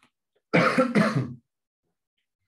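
A man clearing his throat loudly, in two short back-to-back bursts.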